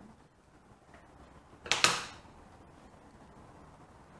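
A single short, sharp crackle about two seconds in: a pointed tool being poked through the bottom of an upturned plastic paint cup to let air in.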